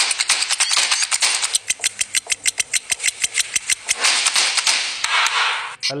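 Intro jingle built on fast, even percussive ticks, about nine a second, with two rising whooshing swells, the second building near the end and cutting off as a voice comes in.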